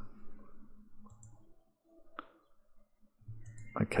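A single sharp computer-mouse click a little past halfway, against low room tone, with a man's faint murmuring before and after it.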